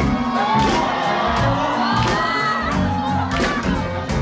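Audience cheering and shouting over a live band of electric bass, electric guitar, drum kit and keyboards playing on.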